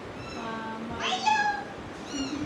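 Kitten meowing: a faint call at the start, then a louder drawn-out meow about a second in.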